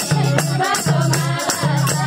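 Nepali ratauli folk song: a group of women singing over a steady madal hand-drum beat, with a tambourine jingling.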